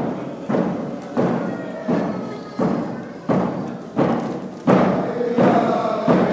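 A drum beating a steady, even beat, about three strokes every two seconds, each stroke ringing out in a reverberant hall, with voices chanting a song over it.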